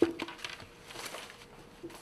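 The tail of a group of men shouting "sir!" cuts off right at the start, followed by faint rustling and scattered light clicks of bags and belongings being handled.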